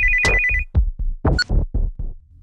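Mobile phone ringing with a fast electronic trill for just under a second, an incoming call, over electronic background music with a steady beat.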